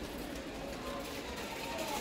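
Steady background noise of a large warehouse store, with faint wavering far-off voices.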